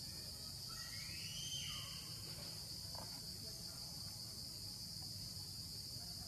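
Insects chirring steadily at a high pitch in the forest, with a faint gliding call that rises and then falls about a second in.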